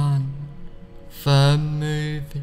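A man's slow, monotone hypnotic voice: one drawn-out, flat-pitched word trails off just after the start, and another long held word begins a little over a second in, over faint steady background music.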